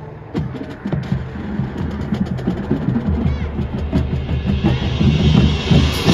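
High school marching band playing: the percussion comes in a moment in with a rapid run of drum and mallet strikes over the winds, a low bass is held from about halfway, and the band builds in loudness to a big full-ensemble hit at the end.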